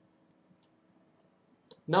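Near silence with two or three faint, brief clicks, followed near the end by a man's voice starting to speak.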